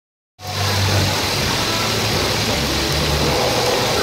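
Multivac thermoforming packaging machine running at its die-cutting station and outfeed conveyor: a loud, steady machine noise with a low hum, cutting in just under half a second in.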